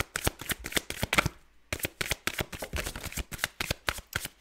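A deck of tarot cards being shuffled by hand: a rapid run of card flicks that breaks off briefly about one and a half seconds in, then resumes.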